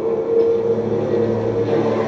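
Film soundtrack holding a steady low chord, with a deeper note swelling about a second in, played through a television speaker.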